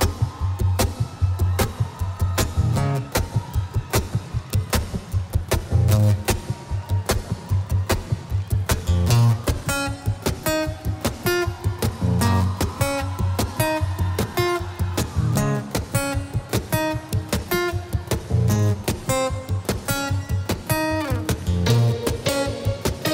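Acoustic guitar played live with fast percussive strumming and low thumps on the guitar body, layered over with a loop pedal. About ten seconds in, picked melodic notes come in on top of the rhythm.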